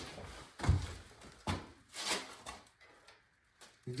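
A few separate short knocks, clicks and thuds of handling, the heaviest and lowest one about a second in.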